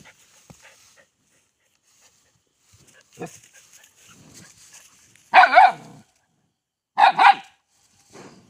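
A puppy barking: two quick pairs of short barks in the second half, the pairs about a second and a half apart.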